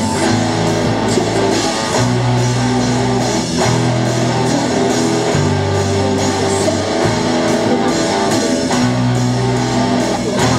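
A live rock band playing an instrumental passage: electric guitars and bass guitar holding chords that change about every second and a half.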